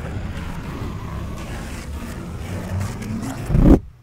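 A sheet of paper being slowly torn into a long strip right at the microphone, a continuous rumbling, crackly rip that swells and then stops abruptly near the end as the strip comes free.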